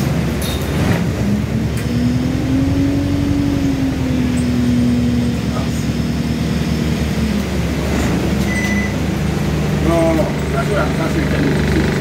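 Alexander Dennis Enviro200 single-deck bus's diesel engine and drivetrain running, heard inside the bus at the front. Its pitch rises about a second in, holds, and falls away around six seconds in, over a steady low rumble.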